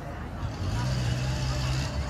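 A motor vehicle's engine gives a steady low hum, starting about half a second in and stopping just before the end.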